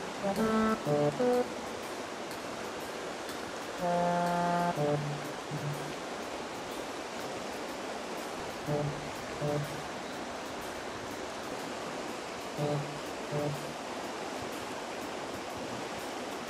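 Sparse background music of short, spaced-out notes in small groups, over a steady rush of flowing river water.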